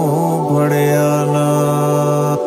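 Male singer in a Sufi devotional song holding one long, steady note after a brief bend in pitch in the first half-second, over sustained musical accompaniment.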